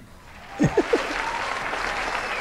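An audience breaks into steady applause about half a second in, with a few short voices, likely laughter, at its start.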